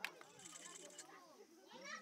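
A single sharp knock right at the start as a hammerstone strikes a stone core in stone-tool knapping, followed by a faint murmur of voices.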